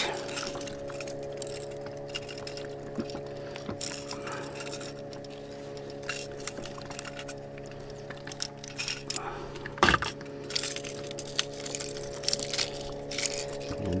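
Light metallic clicks and clinks of fishing tools, such as forceps and a lip grip, being handled, with one sharper click about ten seconds in. A steady low hum runs underneath.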